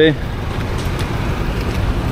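Road traffic noise from cars and motorbikes on a city street: a steady low rumble with an even hiss above it.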